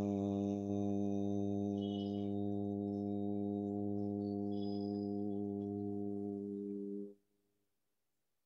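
A man chanting a long, steady 'aaa', the A-kara sound of AUM chanting, held on one low pitch for about seven seconds and then stopping abruptly.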